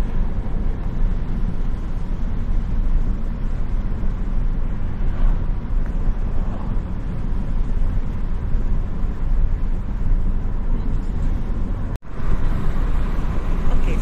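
Steady rumble of a car driving along a road, heard from inside the car. The sound cuts out for an instant near the end.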